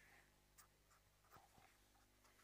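Faint writing sounds, a pen or chalk drawing on the writing surface, with a few light ticks about half a second in and again around a second and a half, over a faint steady hum; near silence otherwise.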